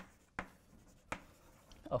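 Chalk writing on a blackboard: three sharp taps as the chalk strikes the board, with faint scratching between them. A man's voice begins again near the end.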